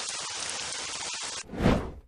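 Rain sound effect: a steady hiss of rain that stops suddenly about a second and a half in. A brief, louder low rumble follows and cuts off at the end.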